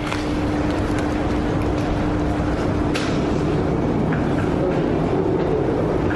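Railway station platform ambience: a steady low rumble with a constant hum, and a single short click about three seconds in.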